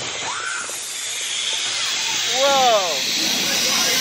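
Big Thunder Mountain Railroad mine-train roller coaster in motion: a steady rushing hiss that grows a little louder, with riders letting out two short whoops, one near the start and one just past the middle.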